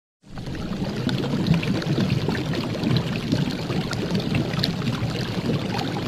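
A steady rush of pouring liquid, full of small splashing crackles, starting abruptly just after the start.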